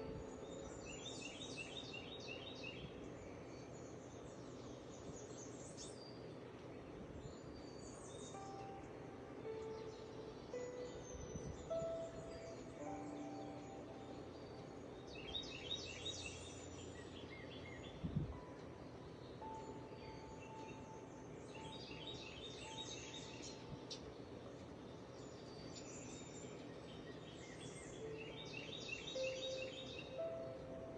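Faint soft background music with short bird chirps trilling every several seconds, and a single dull thump about eighteen seconds in.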